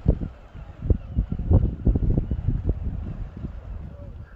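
Wind buffeting the microphone: irregular low thuds and rumble.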